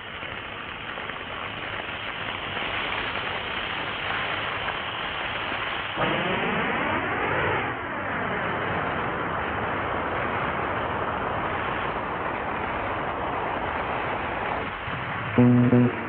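Dramatic film background score over a dense, steady rushing roar of a fire sound effect, with a sweeping whoosh between about six and eight seconds in. Near the end, loud plucked-string notes enter.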